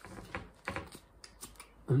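Irregular wet mouth clicks and smacks of a tongue and lips working on the skin of an avocado, a few scattered ticks a second. A hummed "mm" starts near the end.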